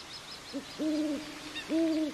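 An owl hooting: a short low note and then two longer, level hoots about a second apart. Faint high chirps sound behind the first half.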